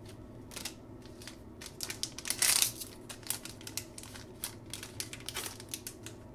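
Trading cards and their packaging being handled: a run of small crinkles and clicks, with one louder crinkling rustle about two and a half seconds in.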